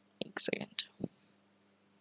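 A woman speaking very softly, almost in a whisper, for about a second.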